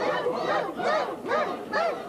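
A crowd of Muppet monster voices hooting together, overlapping rising-and-falling calls about two or three a second.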